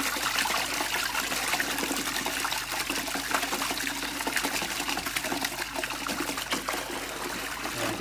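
Water in a plastic tub being stirred hard with a stick, a steady churning splash as the sedative solution is worked up into a froth.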